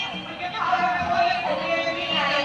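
Marchers' voices singing together, high voices holding long notes that step down in pitch about one and a half seconds in.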